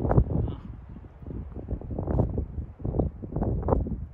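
Wind buffeting the microphone in uneven gusts, with a deep rumble.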